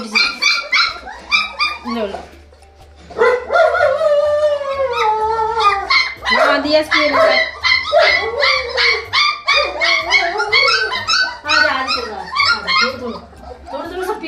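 A litter of three-week-old German Shepherd puppies crying and whining in quick, pitched calls that slide up and down, almost without pause except for a short lull about two seconds in, as they clamour to be bottle-fed.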